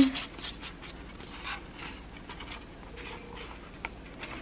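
Cardstock being folded and creased by hand: faint rustling and scraping of the card, with one sharp tick near the end.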